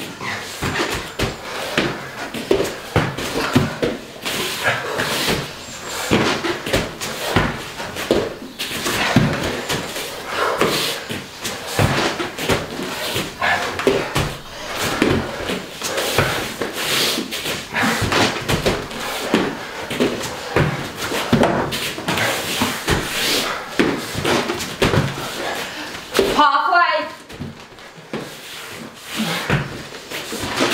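Irregular thuds and slaps of feet and hands landing on a rubber gym floor as two people do Superman burpees, dropping to the floor and jumping back up.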